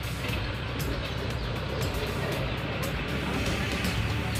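A road vehicle passing by, a fairly noisy, steady sound of traffic, over background music.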